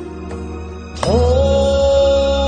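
Song recording with instrumental backing music and light percussion. About a second in, the music swells and a loud note slides up into pitch and holds.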